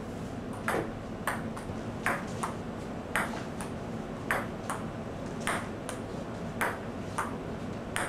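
Celluloid table-tennis ball in a steady rally: about a dozen sharp knocks as it bounces on the table and is struck by the paddles, roughly in pairs and about one and a half a second, each with a brief ringing tail. A low steady hum lies under them.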